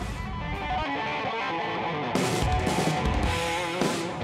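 Recorded rock track led by guitar over bass, with drums and cymbals coming in about halfway through.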